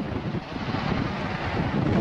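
Steady road and engine noise of a moving truck heard from the cab, with uneven wind buffeting on the microphone.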